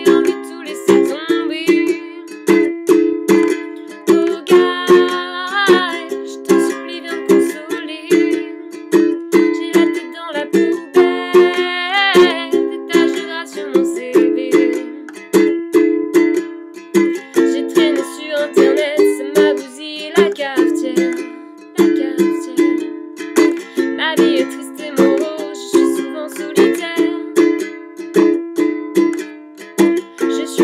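Ukulele strummed in a steady rhythm with sustained chords. A woman's voice sings a melody over it in several stretches, without clear words.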